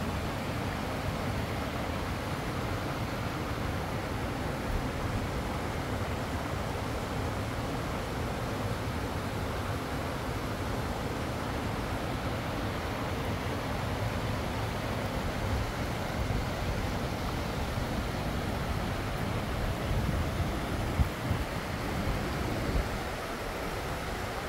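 Steady rush of water from small waterfalls and a fast stream, an even noise with no rhythm, and a few low thumps on the microphone about three-quarters of the way through.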